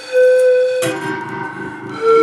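Pan flute playing slowly: one held, breathy note, then about halfway through a sudden breathier, fuller sound with lower tones joining in.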